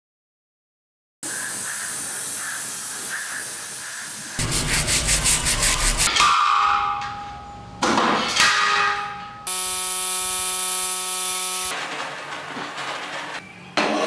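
A quick succession of short hand-tool sounds on metal parts: after a second of silence a steady hiss, then fast rhythmic rubbing strokes, ringing metallic knocks, a steady humming whine for about two seconds, and light scraping near the end.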